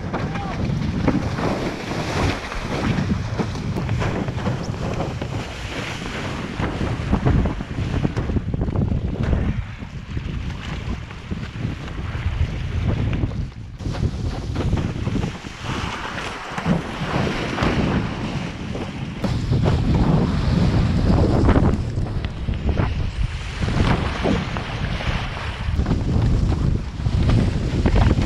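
Wind buffeting the microphone of a windsurfer's rig-mounted camera, with water rushing and splashing under the board as it sails fast across choppy water. The noise rises and falls unevenly.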